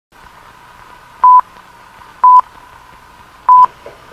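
Film countdown leader beeps: three short, loud beeps on a single pitch, about a second apart, over a faint steady hiss.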